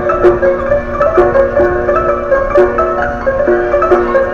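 A hand-cranked Greek laterna (street barrel piano, built in 1942) playing a tune: hammered piano strings giving a melody over a steady accompaniment of lower notes.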